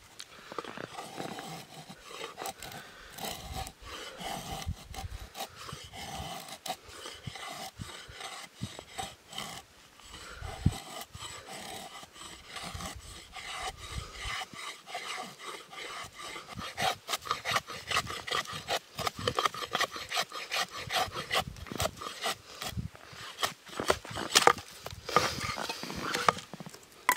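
Knife blade shaving curls down a wooden stick to make a feather stick: a run of rasping scrapes, spaced out at first, then quicker and louder over the last third.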